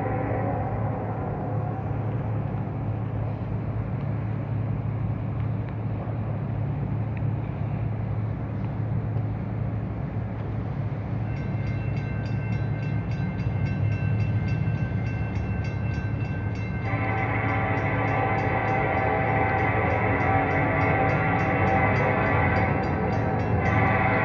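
Approaching Norfolk Southern freight train's diesel locomotives with a steady low rumble. A horn note trails off in the first second. From about halfway through, the locomotive bell rings steadily, and for most of the last third the horn sounds a long chord.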